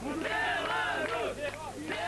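Crowd of spectators shouting and yelling, many voices overlapping with no clear words.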